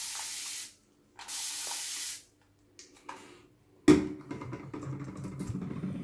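Two sprays of about a second each from a Xiaomi continuous-mist spray bottle, a steady hiss each time. Each single squeeze gives a sustained mist, which the bottle's built-in air channel makes last longer. About four seconds in there is a sharp knock, then mixed handling sounds.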